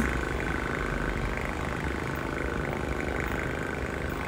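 Cat purring steadily, held close to the phone's microphone.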